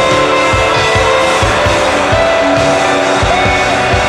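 Live rock band playing electric guitars over a steady drum-kit beat, with notes sliding up and down in pitch in the second half.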